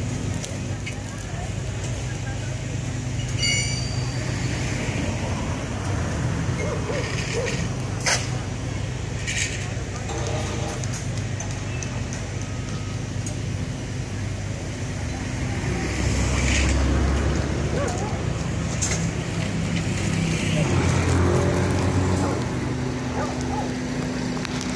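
Construction-site din: a diesel engine of the site machinery runs steadily with a low hum, swelling louder twice in the second half, while a few sharp knocks ring out over it.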